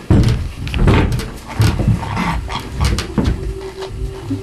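Metal-framed chairs being moved and set down on a stage floor: several loud knocks and scrapes.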